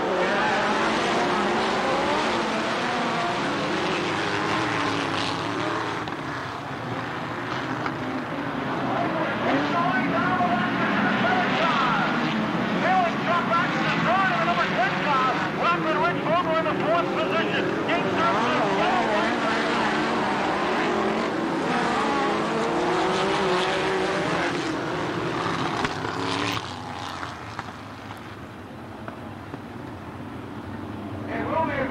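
A field of dirt-track midget race cars at racing speed, many engines overlapping, each rising and falling in pitch as the cars pass and lift through the turns. The engine sound drops away near the end.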